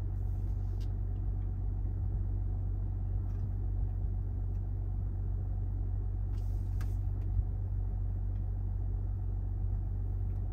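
Steady low rumble of a Range Rover idling, heard inside the cabin, with a few faint clicks of fingers tapping the touchscreen.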